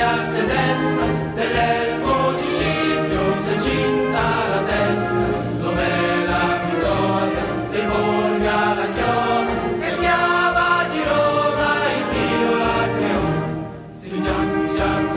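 Choral music: a choir singing over orchestral accompaniment, dipping briefly in loudness near the end.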